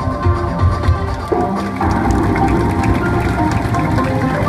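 Music accompanying a stage dance, heard across a large hall: a low pulsing beat under held tones, growing fuller about a second and a half in.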